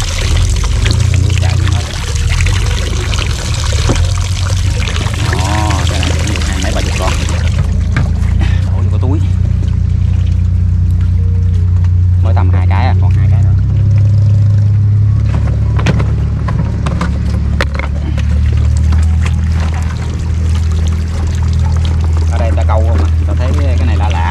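Water streaming and splashing out of the holes of a 20-litre plastic water-bottle fish trap held above a river, stopping about seven seconds in, over a steady low hum.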